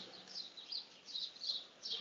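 Faint birdsong: several short, high chirps a few tenths of a second apart over a low background hiss.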